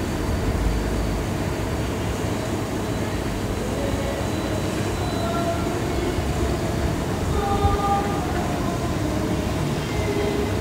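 Steady low rumble of a large room while a congregation gets to its feet, with a few faint held notes in the second half.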